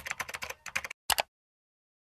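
Computer keyboard typing sound effect: a quick run of key clicks for about a second, then a short double click, like a mouse click.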